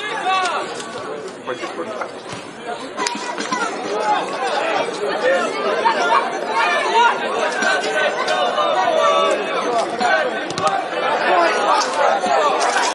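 Babble of several voices talking over one another, the ambient chatter of people at a football match, with a few faint knocks among it.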